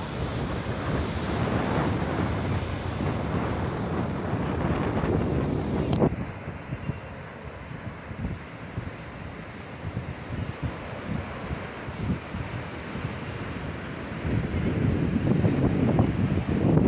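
Surf breaking and washing up on a sandy beach, with wind buffeting the microphone. About six seconds in there is a sharp click and the sound drops abruptly to a quieter, gustier wash, swelling again near the end.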